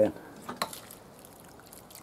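Water pouring from a watering can's spout onto the soil of a pot, a faint trickle and splash with a few small ticks about half a second in.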